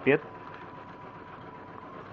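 Steady, even background hum and hiss with one thin, steady high-pitched tone through it, after a brief word at the start.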